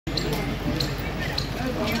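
Several people's voices talking on a busy street, with a short tap repeating evenly a little under twice a second.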